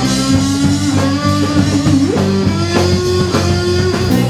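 Live rock band playing, led by an electric guitar holding long sustained notes, one bent upward about halfway through, over bass guitar and drum kit.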